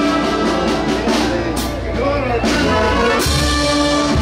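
Live brass band playing, horns holding long notes over a steady low bass.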